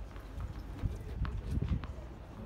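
Several soft thuds and a few light taps from a tennis player getting set to serve on a hard court, over a steady low rumble.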